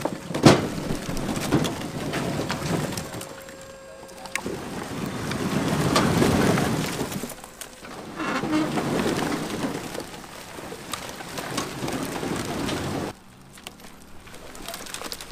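Logs of old rotten firewood sliding off a tilted dump-trailer bed and tumbling onto a pile: a rattling, knocking cascade of wood that comes in three surges and cuts off abruptly near the end.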